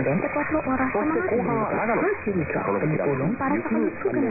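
Talk from a medium-wave AM broadcast station received on 594 kHz and played through a receiver in lower-sideband mode, narrow and muffled, with nothing above about 2.5 kHz.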